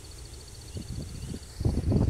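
Quiet open-air background: a low rumble of wind on the phone's microphone with a faint, evenly pulsing high tone behind it. Near the end the rumble grows louder as the phone is swung around.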